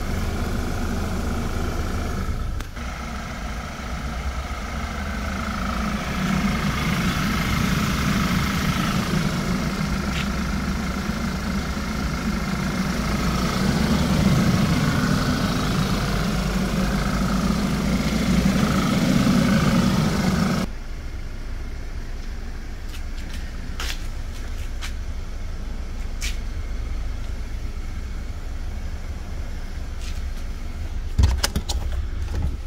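2012 Audi A4 quattro's petrol engine running steadily, heard close up, with a wavering high whine over a low hum. About two-thirds of the way in the sound drops away abruptly, leaving a quieter steady low rumble.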